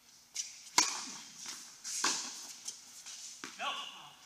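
Tennis rackets striking the ball in an indoor tennis hall: a sharp serve hit about a second in and a return about a second later, each echoing. A short shout from a player near the end.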